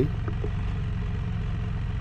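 Can-Am Spyder F3-S three-wheeler's Rotax 1330 inline three-cylinder engine idling with a steady, even low pulse.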